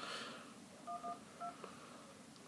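iPhone keypad touch tones as an emergency number (112) is tapped in: two short dual-tone beeps about half a second apart, the first slightly longer.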